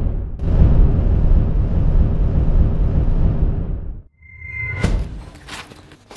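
Dry breakfast cereal poured in a long, loud rush into a metal bowl, pausing briefly just after the start and stopping sharply about four seconds in. Softer handling noises follow, with a short high squeak and a sharp click near the five-second mark.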